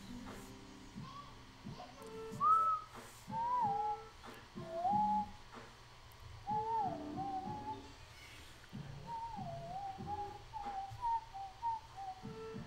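A person whistling a slow, meandering tune in gliding notes over faint background music. Light pencil strokes on paper can be heard underneath.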